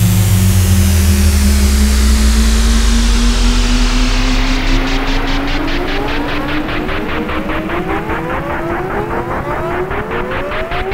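Yamaha Montage M6 synthesizer sounding a held patch with a pitch that climbs slowly throughout, over a low drone that fades away. From about halfway, repeating upward sweeps and a fast pulsing flutter join in, giving it an engine-revving character.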